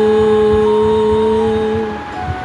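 A voice holding one long, steady low hum, fading just before the end, over soft sustained meditation-music tones.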